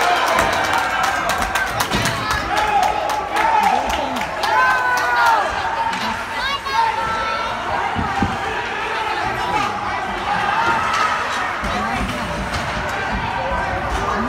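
Spectators' voices shouting and calling out over an ice hockey game, with sharp clacks of hockey sticks and puck on the ice, thickest in the first half.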